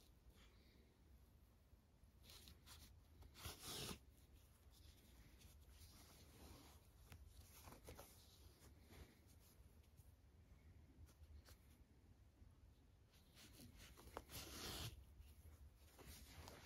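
Faint rustling of yarn being drawn through crochet stitches and of hands handling a stuffed crocheted toy while a yarn needle sews a foot on, with two louder brief rustles, one about three and a half seconds in and one near the end.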